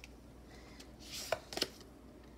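Tarot cards being handled: a brief rustle of cards about a second in, followed by two light clicks, over a faint steady hum.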